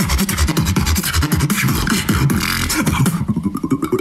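Solo beatboxing in a battle round: a dense rhythm of vocal bass pulses with sharp clicks and hissing snare and hi-hat sounds. About three seconds in, the high sounds drop away for most of a second, leaving only the bass line.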